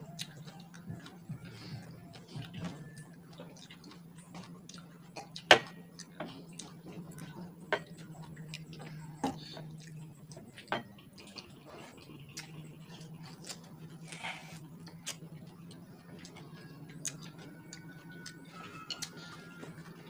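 Scattered sharp clicks and light knocks of fingers and food against ceramic plates at a meal, with a louder knock about a third of the way in and a few more close after it, over a steady low hum.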